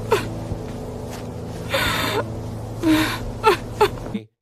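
A woman sobbing, with sharp gasping breaths and short falling cries several times, over a low steady drone.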